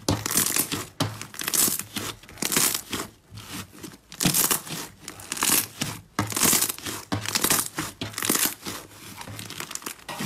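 A lump of green slime being pressed and squeezed by hand, each press giving a short burst of crackling, about once a second.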